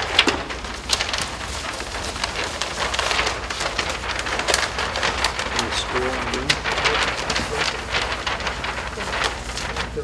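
Large paper plan sheets rustling and crinkling as they are handled and rolled up, with irregular crackles throughout.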